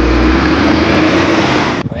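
A large coach bus passing close by: loud engine and tyre noise with a steady low hum, cutting off suddenly near the end.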